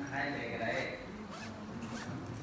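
A short zipper rasp, twice, from a monk's cloth shoulder bag being handled, over men's voices talking in the hall.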